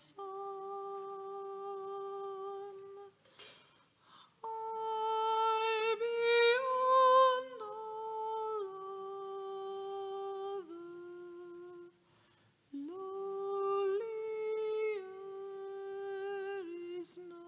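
A single unaccompanied voice carries a slow hymn melody in long held notes, breaking off for a breath a few seconds in and again about three-quarters through. The highest and loudest notes come in the middle.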